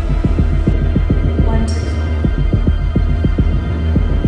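Dark suspense film score: a low steady drone under a fast throbbing pulse of about six beats a second, with a brief airy swish about two seconds in.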